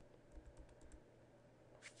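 Faint computer keyboard keystrokes, a few soft scattered clicks over near-silent room tone.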